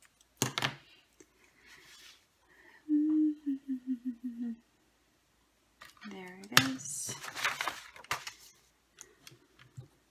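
A sharp scissor snip about half a second in, then a short run of wordless hummed notes stepping down in pitch. Near the end comes a falling hum and about a second of paper rustling and handling on a cutting mat.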